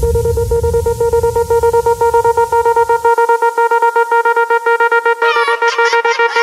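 Electronic dance music: a held synth tone chopped into a rapid pulse over a low bass layer, which drops out about halfway, leaving the pulsing synth on its own. Wavering higher synth lines come in near the end as the track builds.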